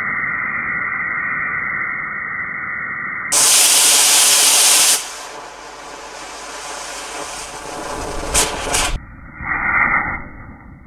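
Two small solid-fuel model rocket motors firing side by side with a steady rushing hiss of exhaust. The hiss jumps suddenly louder about three seconds in and drops back about five seconds in, then fades, with two sharp pops near the end.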